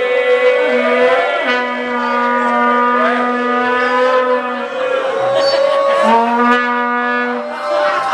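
Live band music between sung verses: long held horn-like notes over a sustained low note, which breaks off just before five seconds in and comes back about a second later.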